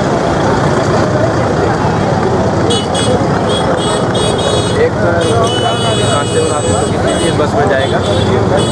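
Crowd of people talking over one another on a street. About three seconds in, a high-pitched vehicle horn sounds in several short blasts, then holds for nearly two seconds.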